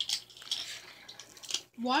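A few faint clicks and rustles of a plastic Hot Wheels track launcher being handled and reset, with a child starting to speak near the end.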